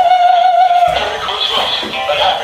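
Animated plush reindeer toy singing a song through its small speaker, with one long held sung note in the first second.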